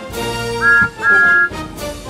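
Steam-engine whistle blowing two short toots, the second longer, each sliding up slightly as it starts, over orchestral background music.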